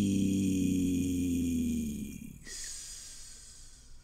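A man's voice holding one long, steady note, the drawn-out sign-off "peace". It fades and ends in a long hissing "s" about two and a half seconds in.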